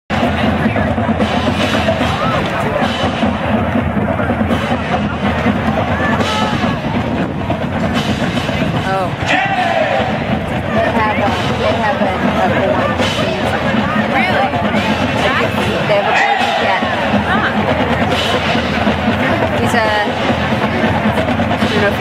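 College marching band playing, with drums sounding throughout, mixed with voices of nearby spectators talking.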